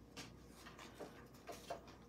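Faint handling of paper and cardstock: a few light ticks and rustles as a strip of patterned paper is wrapped and pressed around a small cardstock box.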